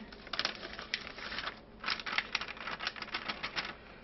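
Muffin mix being shaken and tapped out of its packet into a mixing bowl: rapid, irregular crinkling and tapping of the packet, with a brief lull about halfway through.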